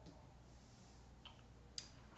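Near silence with a few small clicks, the sharpest near the end, as a small polished tourmaline stone is set down on a card on a cloth-covered table.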